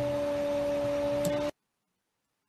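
A steady two-tone hum over a hiss that cuts off suddenly about one and a half seconds in, leaving dead silence.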